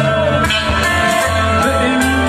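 Live reggae band playing loudly, with bass guitar notes in short repeated pulses, drums and electric guitar, and a woman singing.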